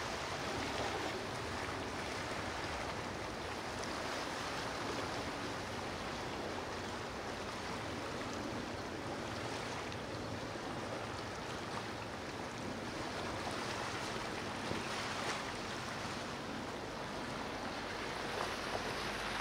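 Steady wash of water noise, like waves and surf, holding level throughout with no distinct engine tone.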